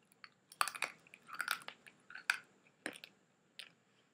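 Hard Polo mints crunching and clicking between the teeth in a mouth crammed with them: a string of sharp, irregularly spaced crunches with softer mouth noise in between.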